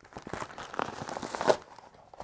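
Plastic mail packaging, a poly mailer and plastic bags, crinkling and rustling as it is handled and opened, a dense run of rustles that is loudest about one and a half seconds in.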